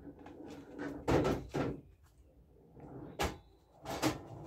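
Pool balls clacking together and rolling across the table after a shot, with a series of sharp knocks, about a second in, again half a second later, then near three seconds and at the end.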